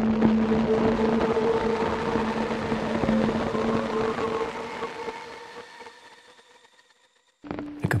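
Granular synth pad built from a rain field recording, played by Ableton's Granulator. One held note with a grainy hiss fades away over a few seconds to silence, and the next note starts near the end.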